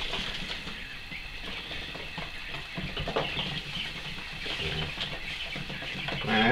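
Coturnix quail chicks peeping in a brooder box, a steady run of short, high chirps.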